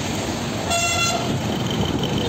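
A vehicle horn honks once, for about half a second a little before the middle, over the steady rumble of passing road traffic.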